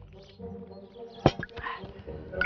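A man drinking from a bottle in swallows, then a single sharp knock on the table a little over a second in.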